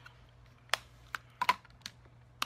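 Five or so short, sharp clicks and taps spread over about a second, from hands handling something right at the microphone.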